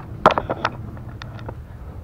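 A quick cluster of sharp knocks and clicks from parts or tools being handled, loudest about a quarter of a second in, then a few lighter ticks, over a steady low hum.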